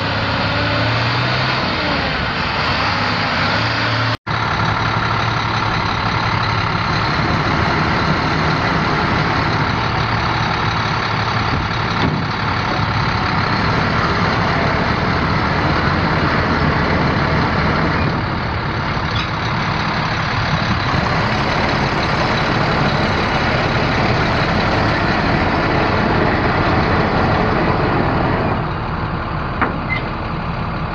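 International DT466 7.6-litre inline-six turbo diesel in a 2006 International 4400 truck, idling steadily. The sound cuts out for an instant about four seconds in.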